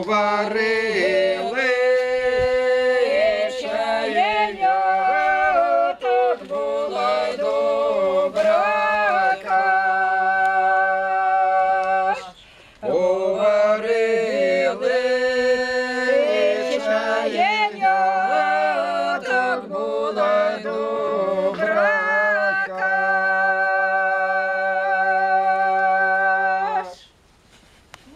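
Unaccompanied Ukrainian chumak folk song sung by a small group of voices in parts, with a low held voice under the melody. It comes in two long phrases with a brief breath about twelve seconds in, and the second ends on a long held chord that stops about a second before the end.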